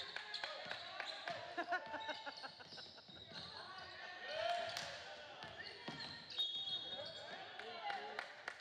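A basketball being dribbled on a hardwood gym floor, a run of sharp bounces, under the chatter of voices in the gym.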